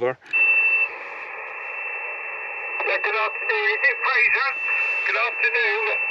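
Amateur radio transceiver's speaker on 40 m sideband right after the operator stops transmitting. Band hiss comes in with a steady high whistle, and from about three seconds in a distant station's voice answers, thin and narrow, over the hiss and whistle.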